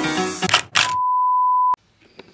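Keyboard music breaks off about half a second in, then a single steady electronic beep sounds for nearly a second and cuts off suddenly.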